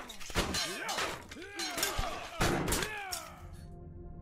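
Sword-fight sound effects: a rapid series of metallic clashes and impacts with ringing, over music. Near the end the clashes stop and only a soft, steady music bed remains.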